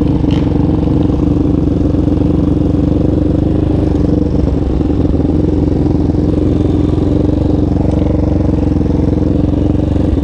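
Yamaha Raptor 700 ATV's single-cylinder four-stroke engine running at a steady, moderate speed, heard close up from the handlebars.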